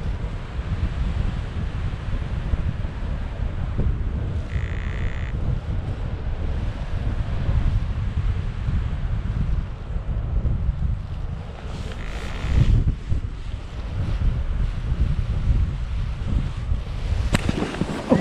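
Wind buffeting the harness-mounted GoPro's microphone during a paraglider flight, a steady rough rush. A brief high tone sounds about five seconds in, and a sharp knock comes just before the end as the pilot reaches the ground.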